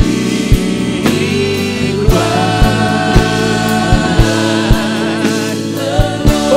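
Live gospel worship music: a man sings a long, wavering melodic line into a handheld microphone over sustained band chords, with a steady low beat about twice a second.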